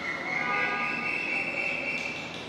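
A horn sounds once: a steady, high, multi-note tone held for about two seconds, rising slightly in pitch before it fades.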